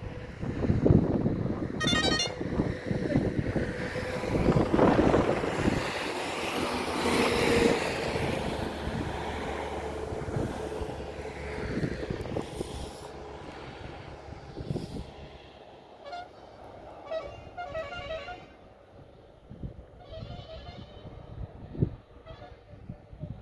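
Wind and road noise inside a moving vehicle, loudest and gustiest through the first half and easing after about fifteen seconds.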